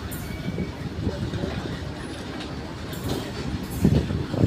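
Freight train wagons rolling past on the rails: a steady low rumble of wheels and bogies with irregular knocks and clatter.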